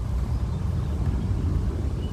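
Steady low rumble with no clear pitch, fairly loud and unchanging.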